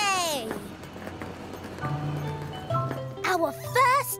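Children's cartoon background music, opening with a brief falling swoop and carrying a short bit of voice near the end.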